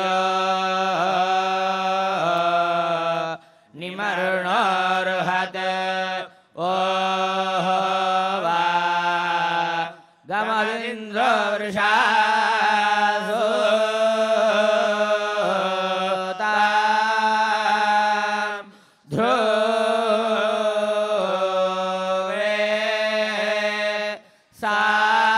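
Male Vedic chanting through a microphone: Veda parayanam, the recitation held on a few steady notes that step up and down with the Vedic accents, in long phrases broken by short breath pauses every few seconds.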